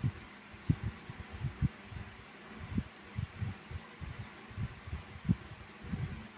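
Soft, irregular low thumps and bumps, a few louder than the rest, over faint room hiss.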